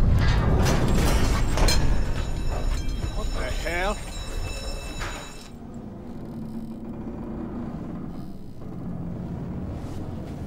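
Film sound effects of a steam ship's engine room: a loud low rumble with hissing, and a brief wavering high sound about three and a half seconds in. After about four seconds it dies down to a quiet, steady low hum.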